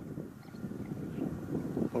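Wind buffeting the camera microphone: an irregular low rumble with no clear pitch.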